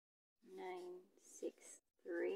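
Soft speech: a woman's voice saying a few short words.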